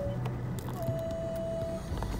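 Car engine and road rumble heard from inside the cabin as the car rolls slowly, with one steady higher tone held for about a second in the middle.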